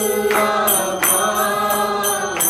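Devotional group chanting of a mantra (kirtan), voices singing together, with hand cymbals striking a steady beat about three times a second.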